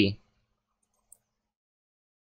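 Near silence with a single faint computer mouse click about a second in, as the node numbering display is switched on.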